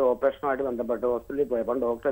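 Speech only: a person talking continuously over a telephone line, the voice thin and cut off above the middle range.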